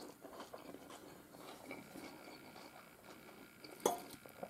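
Faint chewing of a mouthful of leafy salad. Near the end, a short sharp sound as a fork goes into the salad bowl.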